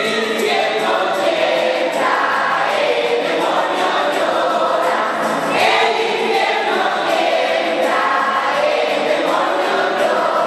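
A congregation of children and adults singing a posada song together in unison, holding long notes, with a priest leading on a microphone. The singing echoes in the church.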